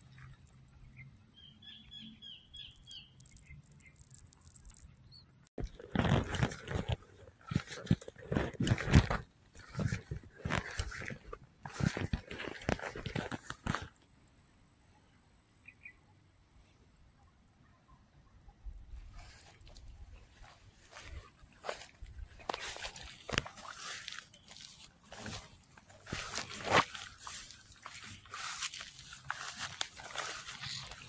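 Rice-field ambience: a steady high-pitched insect drone for the first five seconds, cut off suddenly, then irregular rustling and gusts of wind noise on the microphone. There is a quieter stretch in the middle where the faint insect drone returns, and the rustling picks up again in the last third.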